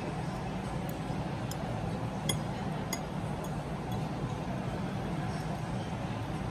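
Light clinks of a metal fork against a plate, about five of them in the first three and a half seconds, over a steady low background hum.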